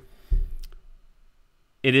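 A soft low thump about a third of a second in, with a couple of light clicks around it, then quiet until a man starts speaking near the end.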